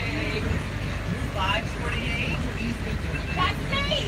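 Steady low rumble of a moving bus's engine and road noise inside the passenger cabin, with scattered passenger chatter.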